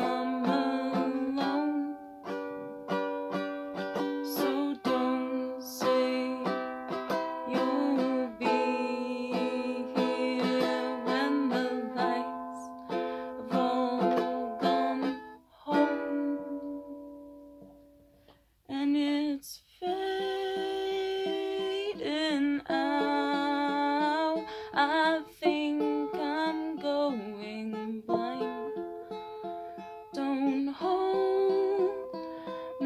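Tenor ukulele strummed in chords under a sung vocal. About sixteen seconds in, a chord is left to ring and fades almost to silence; strumming picks up again a few seconds later.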